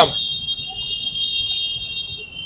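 A steady, high-pitched electronic tone: several pitches held together without a break or pulse.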